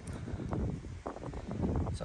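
Wind buffeting the microphone, a low uneven rumble with faint rustling.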